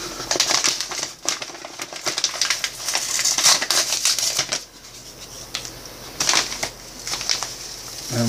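A packet of instant mashed-potato flakes being opened and handled: irregular crinkling and rustling, with a quieter stretch a little past halfway.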